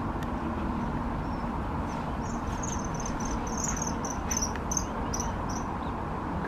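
A run of about a dozen short, high-pitched chirps, roughly three a second, starting about two seconds in, over a steady low rumble.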